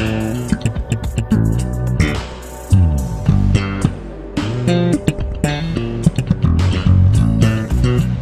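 Electric bass guitar played slap style: a run of short low notes, each with a sharp percussive attack.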